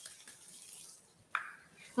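Faint sizzle of minced ginger frying in a little oil in a wok, fading away within the first second. About a second and a half in there is a single short, sharp sound.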